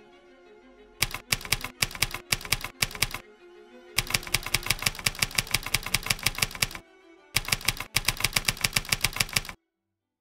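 Typewriter keys clacking in three quick runs of about six strokes a second, with short pauses between the runs, the sound effect for a title being typed out letter by letter. It stops abruptly near the end, with faint music fading underneath.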